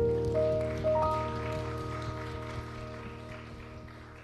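Worship-band keyboard holding a sustained chord, with a couple of higher notes added in the first second, slowly fading away.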